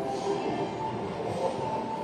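Steady indoor shopping-mall ambience: a level mechanical hum with faint, wavering tones over it.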